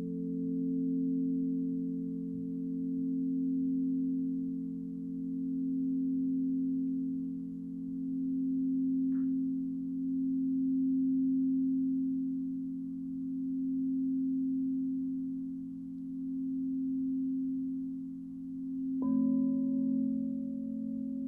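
Crystal singing bowls ringing with long, sustained low tones that swell and fade in slow waves, a wand held against the rim of one bowl to keep it sounding. About a second before the end another bowl is struck, adding a higher tone on top.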